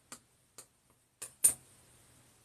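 Palette knife clicking against the palette in four short taps, the loudest about a second and a half in.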